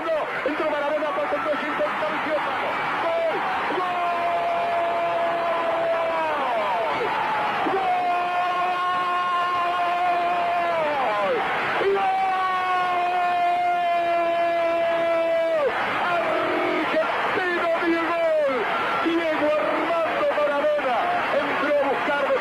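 Spanish-language football commentator's goal call: a few excited words, then three long drawn-out shouts of 'Gooool', each held for three to four seconds, followed by rapid shouted speech naming the scorer, 'Diegol... Diego Armando Maradona'. The call marks a goal just scored.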